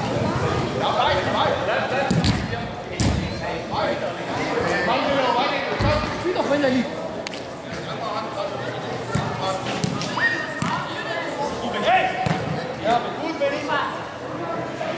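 Indoor soccer match in a hall: scattered shouts from players and spectators, with the thuds of a football being kicked and striking hard surfaces at intervals.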